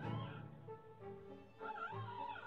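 Background music with high, wavering mewing calls that rise and fall, once near the start and again near the end: young fox cubs whimpering in the den.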